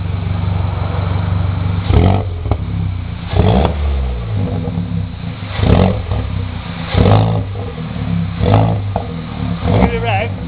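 Peugeot 207 GTI's 1.6-litre turbocharged four-cylinder idling through a straight-through exhaust, blipped six times in short, sharp revs about every one and a half seconds.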